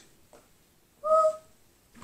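A single short whistled note, steady in pitch, lasting about half a second, about a second in.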